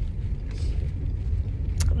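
Steady low rumble of a car on the road, heard from inside the cabin, with a single short click near the end.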